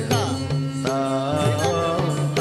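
Odissi classical music: a singer's ornamented vocal line gliding between notes over a steady drone, with mardala drum strokes roughly every half second.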